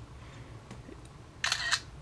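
iPhone camera shutter sound effect played through the phone's speaker as a photo is taken: one short, crisp shutter click about a second and a half in, after faint room tone.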